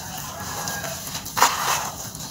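Hands squeezing and crumbling wet red dirt in a tub of water: a soft, gritty squelch that turns into a loud wet crunch about one and a half seconds in.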